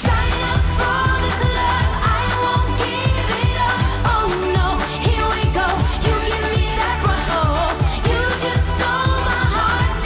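Female pop singer performing over an electronic dance-pop backing track with a steady kick-drum beat.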